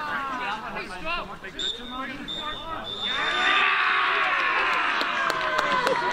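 Men's voices talking and calling out across an outdoor football pitch, not clearly worded, growing louder and busier about halfway through. A thin, high, steady tone sounds in short pieces for about two seconds in the middle.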